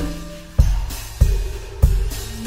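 Instrumental closing theme music with a steady drum beat, a hit about every 0.6 seconds over a deep bass.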